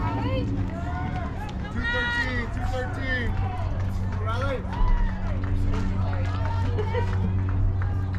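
Players and spectators calling out and chattering across a softball field, voices rising and falling, over a steady low hum, with a brief low thump about five seconds in.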